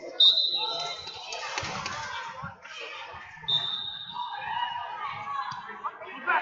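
A referee's whistle blown sharply to restart a wrestling bout, followed about three seconds later by a second, shorter and softer whistle. Around them, chatter echoes in a large hall and there are a few dull thuds.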